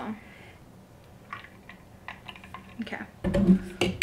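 A few faint clicks and light taps as a plastic creamer bottle and a glass jar are handled on a kitchen counter, with a sharper click near the end.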